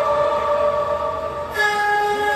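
Long, steady horn-like notes held together, switching to a new, higher set of notes about one and a half seconds in.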